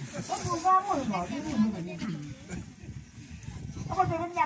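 A woman's voice speaking in a local language, with a short hiss about half a second in.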